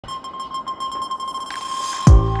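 Electronic logo-intro sound effect: a fast-pulsing synthetic beep held at one pitch, with a rising swell of hiss building over the last half second.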